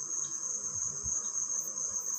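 Steady high-pitched trill of an insect, running unbroken, over faint low rumbling.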